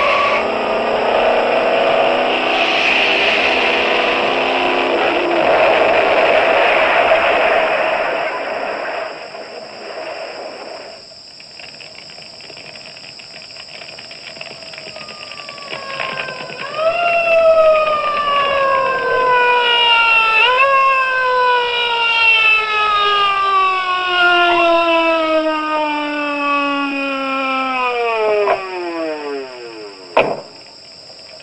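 Film sound effects of a nitroglycerin-loaded hot rod blowing up: loud engine and blast noise, with a sharp rise a couple of seconds in, lasting about nine seconds. After a quieter spell comes a long wail that jumps up in pitch twice, then slides down and falls away steeply near the end.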